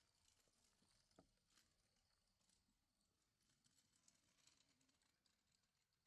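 Near silence, with faint scattered high ticks.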